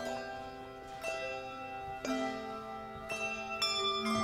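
Handbell choir ringing brass handbells: a new chord is struck about once a second, each left to ring on under the next.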